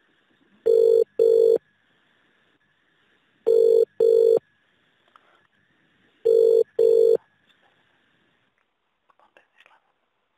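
Telephone ringing tone heard down the line by the caller: three British-style double rings, each pair two short buzzing tones, repeating about every three seconds. The call is ringing through to a customer-service agent.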